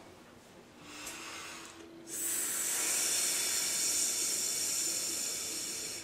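A man breathing: a faint breath about a second in, then one long, steady hissing breath of about four seconds as he settles into a trance state before speaking.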